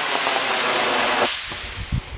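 Amateur rocket motor hissing as the rocket climbs, the hiss dying away about one and a half seconds in as the motor burns out.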